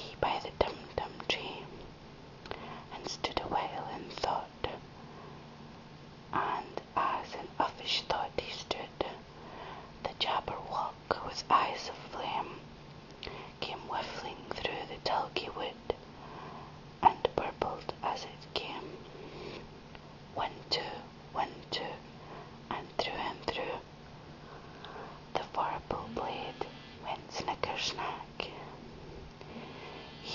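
A person reading a poem aloud in a soft whisper, phrases broken by short pauses, over a faint steady low hum.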